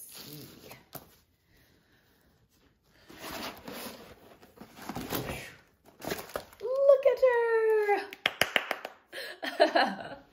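Rustling and crinkling of a rolled diamond-painting canvas and its plastic cover film as it is unrolled by hand. About seven seconds in comes a loud, high-pitched voice sound lasting about a second and falling slightly, then a quick run of clicks.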